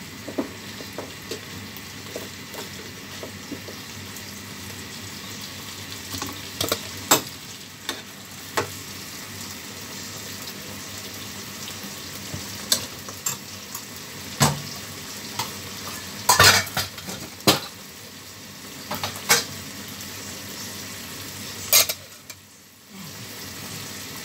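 Shrimp and green chilies frying in a pan on a gas stove, a steady sizzle, with scattered sharp clicks and knocks of the wooden spatula and the glass lid against the pan; the loudest knocks come in the second half.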